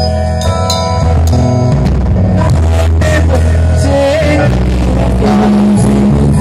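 Live rock band playing through a PA system: bass guitar, drum kit and guitar, with a singer.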